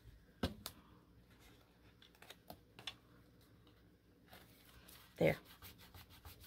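Scattered light taps and paper crinkles from hands handling a paper envelope and pressing a freshly glued paper piece down onto it, the sharpest tap about half a second in and a quicker run of small ticks near the end.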